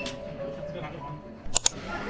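Soft background music fading out, then near the end two sharp clicks about a tenth of a second apart, like a camera shutter.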